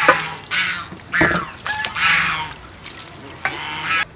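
Domestic fowl calling nearby: a run of short calls, about five in four seconds.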